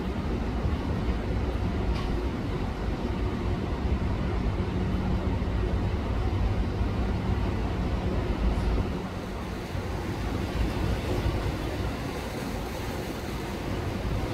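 Low, steady rumble of a large motor yacht's engines and the rush of its wake as it passes close by, with a steady hum that eases a little about nine seconds in.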